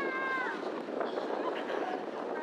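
A dog's high-pitched whine, held level and then dropping in pitch as it breaks off about half a second in, with voices faint in the background.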